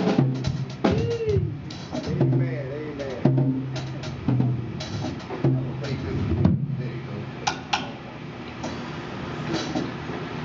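Live band starting up loosely: electric guitar notes sliding up and down in pitch over irregular drum hits, with no steady beat yet.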